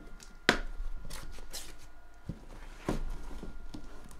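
A cardboard shipping case being pulled open by hand: a sharp knock about half a second in, then scraping and rustling of cardboard with a few more knocks.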